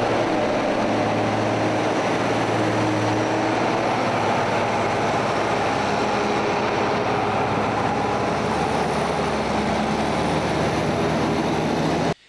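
Diesel engines of a beet-hauling lorry and farm tractors running steadily, a continuous low drone.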